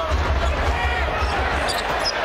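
Live NBA arena court sound: a basketball being dribbled up the court on a fast break over crowd noise and a steady low rumble.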